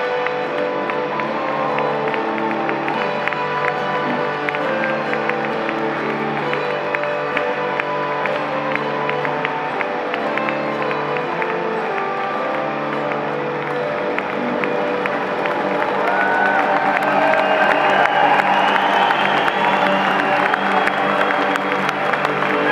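Live acoustic guitar, mandolin and lap steel guitar playing the instrumental ending of a song, strumming and then holding out the final chords. Audience applause, cheering and whoops rise over the last chords about two-thirds of the way in.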